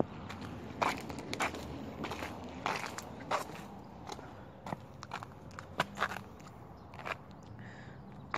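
Footsteps on gritty concrete and rubble: uneven steps with scattered crunches and clicks.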